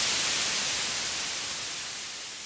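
White-noise hiss from the end of an Italo disco track, with no beat or melody left, fading out steadily. The hiss is strongest in the high end.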